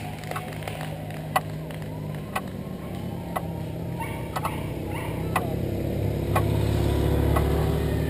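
Police motorcycle engine approaching along the road and passing close by, its low rumble growing louder from about five seconds in and loudest around seven seconds. Sharp clicks sound about once a second in the first half.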